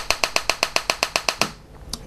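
Homemade TEA nitrogen laser firing: a rapid train of sharp snapping electrical discharges, about ten a second, that stops about a second and a half in, with one last snap near the end.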